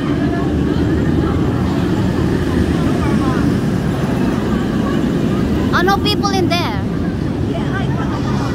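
Inverted steel roller coaster train running along the track overhead, a steady low roar. Riders scream briefly about six seconds in.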